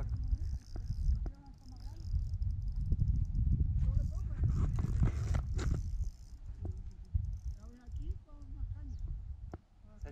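Wind buffeting the microphone: an uneven low rumble that dips after about six seconds. Faint voices of men talking come through it.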